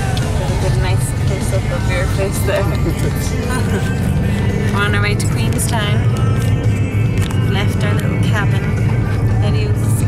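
Steady low rumble of a car's road and engine noise inside the cabin while driving, with background music over it.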